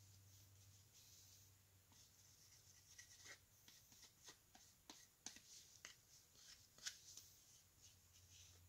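Near silence, with faint rubbing and light ticks from about two seconds in as gloved hands spread Rubio Monocoat oil finish over a wooden coaster with an applicator pad.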